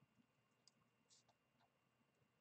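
Near silence, with two faint short scratches of a coloured pencil on Bristol vellum paper, about two-thirds of a second in and just after a second in.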